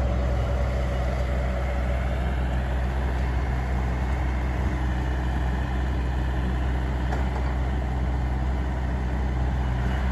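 Diesel engine of a tracked excavator running steadily as it works demolition rubble, a deep, even hum.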